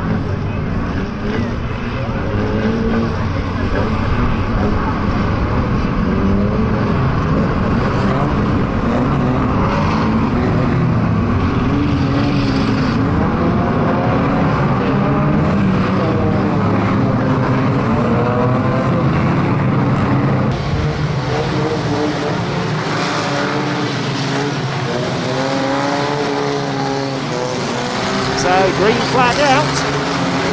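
Several classic banger racing cars' engines racing together, their pitch rising and falling as the cars accelerate and lift off through the bends. The low rumble thins out about two-thirds of the way through, and the revving grows busier and louder near the end.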